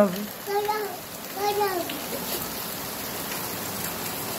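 Heavy rain falling steadily on flat concrete rooftops, an even hiss. Two short voiced calls stand out over it in the first two seconds.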